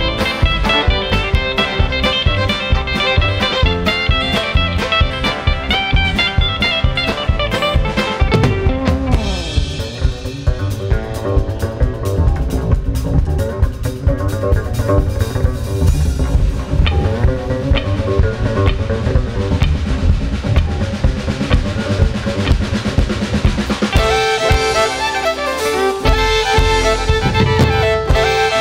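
Live band with fiddle, acoustic and electric guitars, upright bass and drum kit playing an instrumental break, fed straight from the soundboard. The strings play busily for the first eight seconds or so. Then comes a stretch carried mostly by drums and bass, and the fiddle comes back in with long bowed notes near the end.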